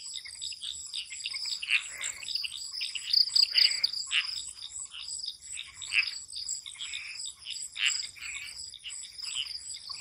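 Night chorus of frogs giving irregular short calls over the steady, high, pulsing trill of crickets.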